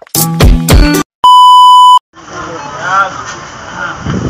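Intro music that stops about a second in, followed by a loud, steady electronic beep lasting just under a second. Then the background noise of a busy shop, with faint voices.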